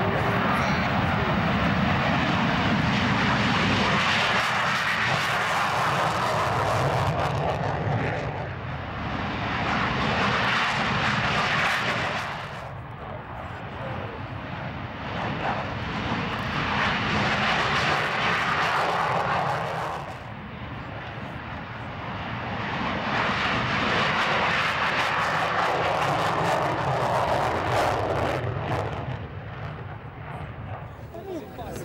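Lockheed F-104 Starfighter jets on take-off runs one after another. The roar of their J79 turbojets swells and fades in about four waves as each jet passes.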